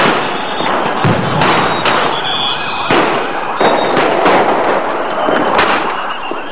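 Police gunfire and sound-grenade blasts: about eight sharp bangs at uneven intervals over six seconds, over a continuous noisy din.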